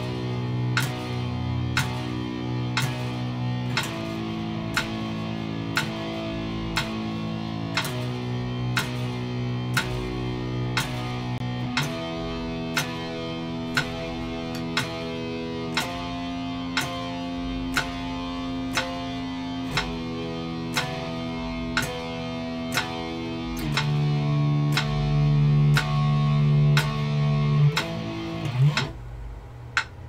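Electric guitar playing a power-chord progression, changing chord about every four seconds, over a steady metronome click. The last chord is let go with a short downward slide about two seconds before the end, leaving the clicks.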